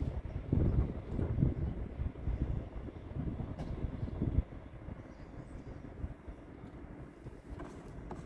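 Wind buffeting the microphone: an uneven, gusty low rumble, heavier in the first half and easing off about four and a half seconds in.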